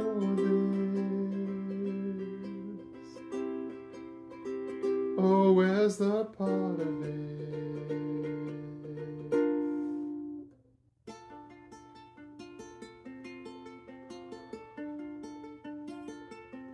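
Ukulele playing an instrumental passage: chords ring out for about ten seconds, stop briefly, then quieter picked notes follow.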